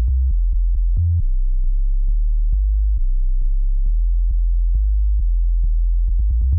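A deep sine-wave bass from FL Studio's 3x Osc synth playing a looped bass line, stepping between low notes, with a light tick about twice a second.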